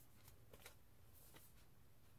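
Near silence with a few faint rustles and light clicks from a cardboard LP jacket being handled, all in the first second and a half.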